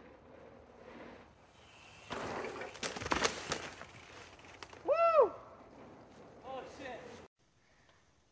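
A mountain bike crashing on a dirt trail: rough scraping and several sharp knocks as the bike goes down. About a second later comes one loud shout that rises and falls in pitch, then a fainter cry, and the sound cuts off suddenly near the end.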